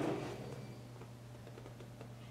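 Quiet room tone with a steady low hum. A faint rustle fades out in the first half second.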